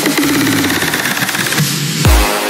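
Electronic trance track in a build-up section: the kick drum and bass are cut, leaving fast, evenly repeated buzzy synth notes over a wash of noise.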